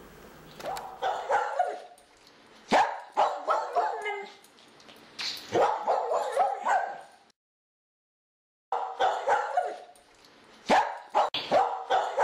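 A dog barking and yipping in about five short bursts of several barks each, with a dead-silent gap in the middle.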